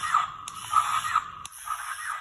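Small electric motors and plastic gears of a toy RC stunt car whirring in short runs, with clicks as it stops and starts about half a second in and again about a second and a half in.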